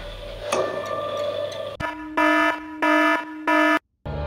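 Background music, then an electronic alarm tone beeping three times, each beep about half a second long. The beeps are louder than the music and stop abruptly near the end.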